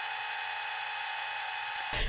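A steady whirring, hissing fast-forward sound effect in the manner of a VHS tape winding at speed, cutting off suddenly near the end.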